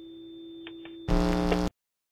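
Electronic outro jingle. A faint held synth chord plays first, then about a second in a short, louder electronic sting with a falling tone, which cuts off abruptly into dead silence.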